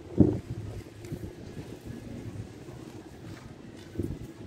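Wind buffeting the microphone: a low, steady rumble, with one brief loud blast just after the start.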